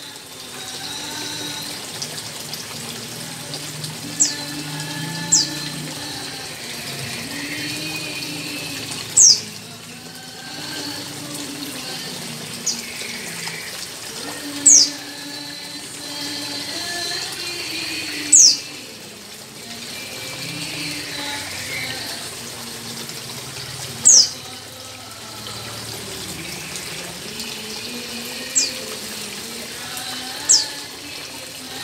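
Steady running, splashing water, with a bird's sharp, high chirps, each falling quickly in pitch and coming every few seconds, about ten in all.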